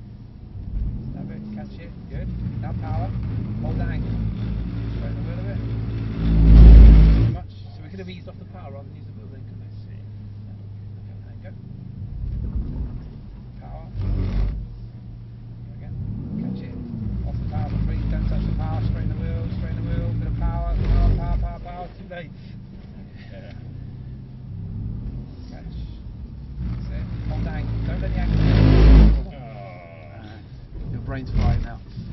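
Mercedes-AMG C63 S's 4.0-litre twin-turbo V8 heard from inside the cabin, running at low revs with revs rising and falling. Sharp bursts of throttle rise to loud peaks about seven seconds in and near the end, the last one building up before cutting off. These are the power inputs used to slide the car on a wet surface.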